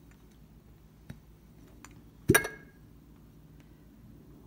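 Empty glass candle jar handled in the hands: a few faint taps, then one sharp clink a little past two seconds in, with a brief ring from the glass.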